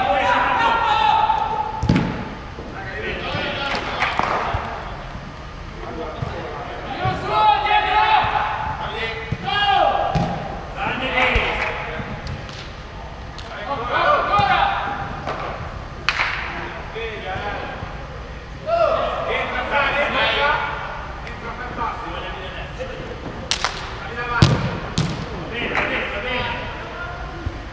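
Players shouting calls to one another during a five-a-side football game, with sharp thuds of the ball being kicked and hitting the boards, several of them in quick succession near the end.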